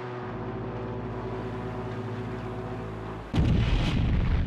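A low sustained musical drone holds steady for about three seconds, then a sudden, loud explosion breaks in with a deep rumble near the end.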